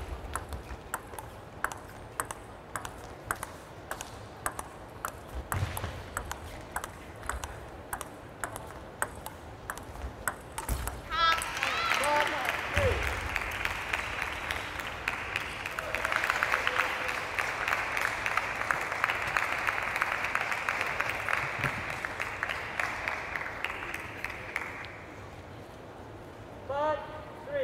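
Table tennis ball clicking off bats and table in a rally for the first ten seconds or so, then applause and cheering that start about eleven seconds in and run until shortly before the end, after the point is won.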